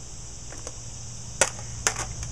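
A few sharp plastic clicks from a small water bottle being picked up and handled, the loudest two about a second and a half and two seconds in, over a steady high-pitched insect drone.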